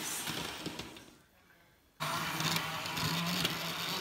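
Model train running on its track: a small electric motor's steady hum with wheel rattle. The sound fades almost to silence in the first second or two, then cuts back in abruptly about halfway through.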